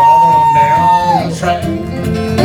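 Live country duo of electric and acoustic guitar between sung lines, with one long high note held and then sliding down a little past a second in; a short laugh follows.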